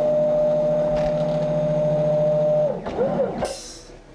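Computerized Wizard mat cutter running a cut: its motors drive the cutting head along the rail with a steady whine that winds down about two and a half seconds in. A short rising-and-falling whine follows as the head makes one more brief move, then a brief hiss near the end.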